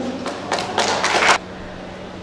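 A short burst of rustling noise picked up by the podium microphone, as one speaker makes way for the next, then a faint steady hum from the hall's sound system.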